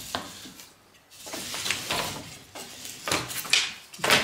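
Sawn juniper boards clattering and scraping against one another and a wooden workbench as they are shifted by hand, with a few sharper wooden clacks near the end.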